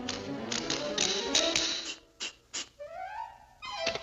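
Cartoon music score with sharp tapping sound effects. Two separate knocks come about halfway through, followed by a rising, whistling glide.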